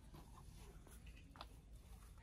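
Near silence: faint room tone with light scratchy rustling and a single short click about one and a half seconds in.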